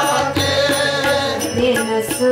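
Sikh kirtan: a woman singing a devotional hymn with tabla accompaniment, with other voices joining in.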